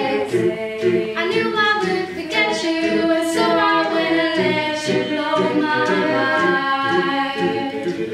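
A mixed group of young male and female voices singing a cappella in harmony, with no instruments, holding and moving between chords.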